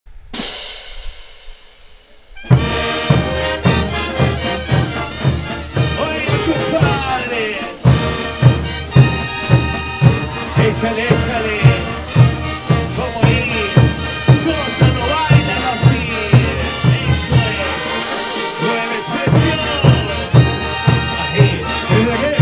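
A large brass band of trumpets, sousaphones, horns and drums playing dance music, with the bass drum beating about twice a second. The music comes in about two and a half seconds in, after a short fading opening sound.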